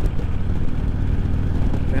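Harley-Davidson Road King Special's V-twin engine running steadily at highway cruising speed, a constant low rumble mixed with road and wind noise.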